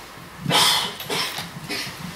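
Handheld microphone rustling and bumping as it is handed from one person to another: a cluster of short, uneven scrapes and knocks, the first about half a second in the loudest.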